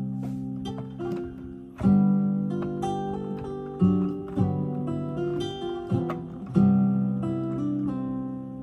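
Sampled Martin D-41 acoustic guitar from the Ample Guitar Martin plugin, played from a keyboard in the key of C. Chords are struck about every two seconds and ring on, with single melody notes moving above them.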